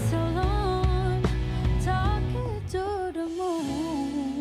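A woman singing a slow melody with smooth pitch glides over instrumental accompaniment. The voice stops shortly before the end, leaving the accompaniment sustaining.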